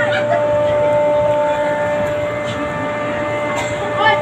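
A steady, unchanging hum holds under a noisy crowd hubbub, with brief snatches of voices.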